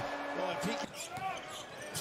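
Basketball game broadcast playing at low level: a ball bouncing on the hardwood court under a commentator's voice.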